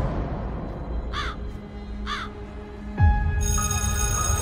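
A crow cawing twice, about a second apart, over dark, low trailer music. About three seconds in comes a loud low hit, the loudest moment, and then a bell starts ringing.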